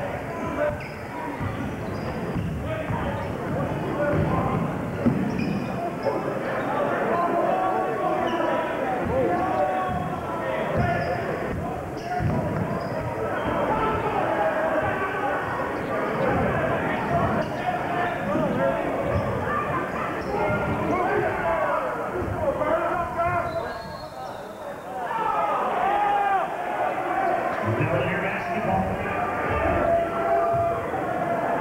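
A basketball bouncing repeatedly on a gym floor during play, under the steady chatter of many voices in the gym.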